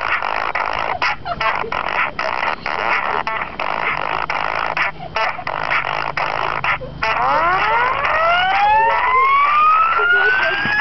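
A dense, noisy wash of sound with brief dropouts. From about seven seconds in, several overlapping siren-like sweeps rise steadily in pitch and grow louder.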